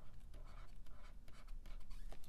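Stylus writing on a drawing tablet: a quiet, quick run of short scratches and taps as a few letters and an arrow are written out.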